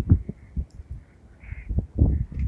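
Irregular low thumps and rumbles on the recording, dying away about half a second in and returning just before the end, with a faint hiss in between.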